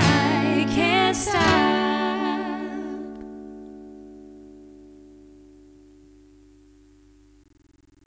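A woman and a man sing the last line over a strummed acoustic guitar. About two seconds in, the voices stop and the final guitar chord rings on, fading away slowly over about five seconds.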